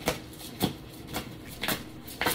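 A deck of oracle cards being shuffled by hand, the cards snapping together in four short slaps about half a second apart.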